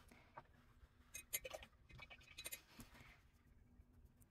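Faint clicks, taps and rustles of painting supplies being handled (brush, plastic palette and paper postcard), with the sharpest clicks a little over a second in and again around two and a half seconds.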